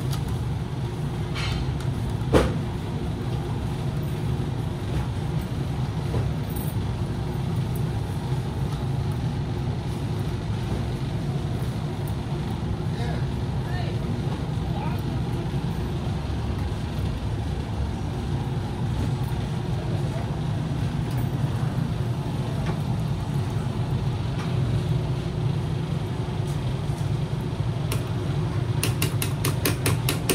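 Steady low hum of background noise with faint voices in it. One sharp knock comes about two seconds in, and a quick run of clicks near the end.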